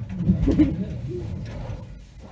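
A muffled, low person's voice, wavering briefly in pitch, with low rumbling handling noise.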